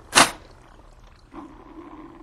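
OxySure Model 615 emergency oxygen unit being activated. The knob turns with one loud knock just after the start, and about a second later a steady bubbling starts inside the unit, the sign that oxygen is being generated and flowing.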